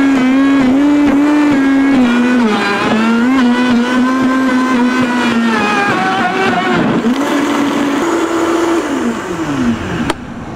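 Vitamix blender motor running at high speed, liquefying chopped aloe vera, prickly pear cactus pads and orange juice. Its pitch wavers as the load shifts, dips about two and a half seconds in, and falls away near the end as the motor slows.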